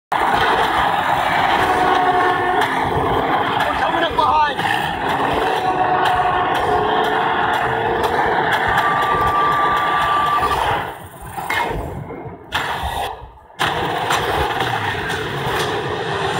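Action movie-trailer soundtrack: vehicle engines and chase sound effects in a dense, loud mix. A steady high tone is held for about two seconds near the middle, and the sound drops away briefly twice near the end.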